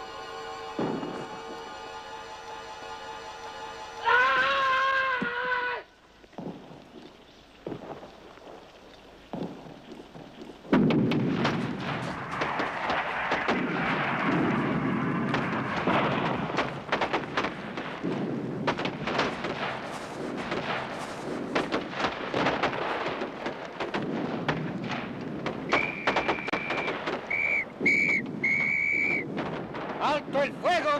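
War-film soundtrack: a held musical chord and a louder wavering tone, then a quieter stretch. About eleven seconds in it changes suddenly to a dense, loud run of booms and rapid cracks, like artillery and gunfire, that goes on to the end.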